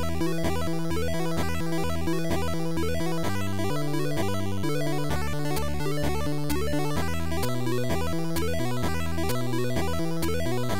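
Electronic, video-game-style background music with stepping synth notes and a steady beat of about two clicks a second.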